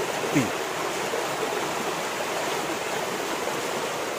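A small stream rushing steadily over rocks.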